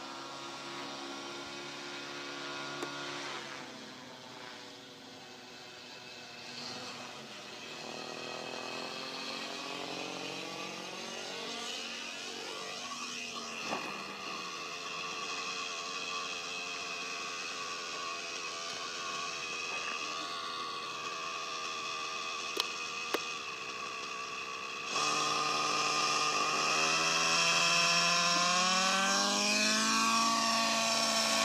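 Nitro-engined Align T-Rex 700N RC helicopter running, a steady mix of engine and rotor tones whose pitch drifts as it descends in autorotation. About 25 s in it suddenly gets louder and its pitch climbs as the engine is throttled up and the rotor spools back up.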